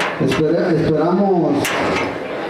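Speech: a voice talking, words not picked up by the transcript, with no other distinct sound standing out.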